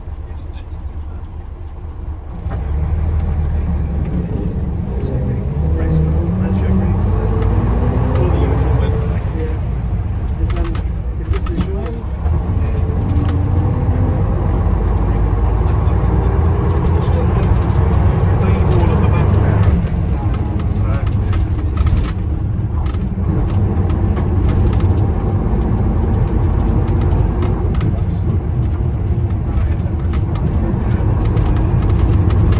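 Bristol LS coach's diesel engine heard from inside the saloon while the coach is under way, getting louder a couple of seconds in. Its pitch rises several times as it accelerates, over body rattles.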